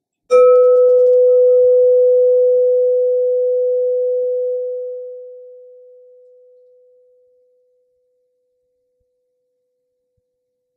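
Crystal singing bowl struck once with a mallet, ringing with one steady tone over fainter higher overtones that die away first; the tone fades out over about seven seconds.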